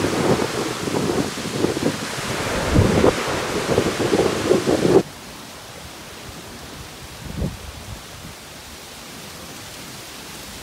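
Wind buffeting the microphone in uneven gusts for the first half. It cuts off suddenly about halfway through, leaving a quieter steady hiss with one short soft thump.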